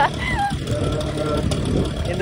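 Suzuki RC100 motorcycle running steadily under way, a continuous low engine and road rumble, with a short laugh from the rider at the start.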